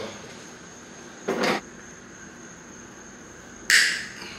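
Two brief handling noises of hands and a hand tool working in a motorcycle's stripped tail section: a short scuff about a second in, then a sharper, higher one near the end.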